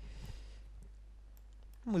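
A few faint clicks of the presenter working his laptop to run a query, over a steady low hum in the hall. A man starts speaking just before the end.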